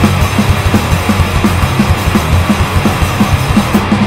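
Death-metal/crust band playing an instrumental passage: heavily distorted guitars with the Boss HM-2 'buzzsaw' tone and bass over a steady, driving d-beat drum pattern.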